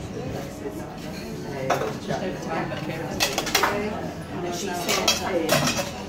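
Boston cocktail shaker, a metal tin and a mixing glass, clinking and knocking as it is handled, with a few separate sharp clinks rather than a steady shaking rhythm.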